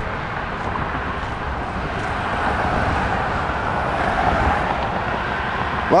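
Steady road-traffic noise from a busy multi-lane highway below, swelling slightly about halfway through as vehicles pass.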